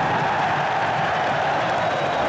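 Stadium crowd noise: a dense, steady wash of many voices from the stands.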